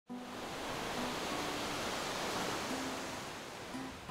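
Small waves breaking and washing up a sandy beach: a steady rush of surf that swells and then eases slightly toward the end.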